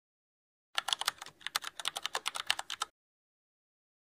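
Computer keyboard typing: a quick run of clicks, about ten a second, starting about a second in and lasting about two seconds.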